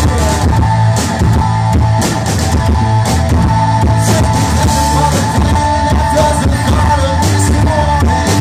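Live rock band playing loudly: distorted electric guitar, heavy bass and drums, with a singer's voice over them.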